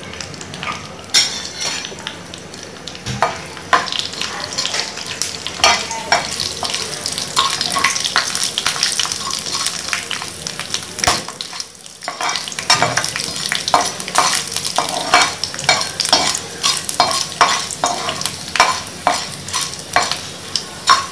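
Hot oil sizzling in a non-stick kadai as dried red chillies and urad dal fry for a tempering, with a spatula stirring and scraping through them, giving frequent short clicks against the pan.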